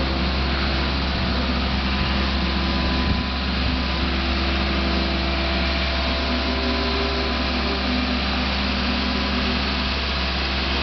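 Boat travel lift's engine running steadily as the lift drives slowly along with a sailboat hanging in its slings.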